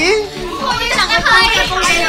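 A group of girls chanting "ever" over and over in a game, with overlapping voices and laughter.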